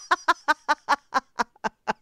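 A person laughing hard: a long run of quick, high-pitched "ha" pulses that slow down and grow fainter toward the end.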